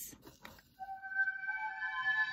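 Soft electronic plant music from a Music of the Plants device, its notes generated by a sensor clipped to a yellow rose. After a brief lull, long held notes come in just under a second in, and another note is layered on shortly after.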